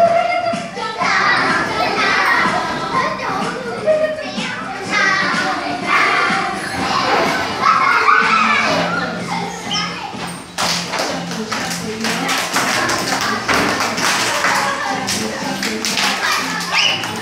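A children's dance song plays from a laptop while a room full of young children chatter and call out. About ten seconds in, a dense run of claps and thumps begins as the children move along to the music.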